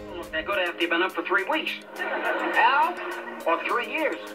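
Dialogue from a 1960s sitcom clip, a man talking, sounding thin and cut off in the highs like old television audio, over a background music bed.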